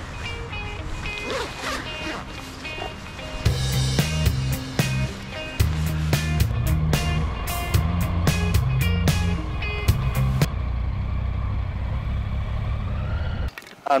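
Background music with a steady beat and heavy bass. The beat comes in a few seconds in, eases off, then cuts off suddenly near the end.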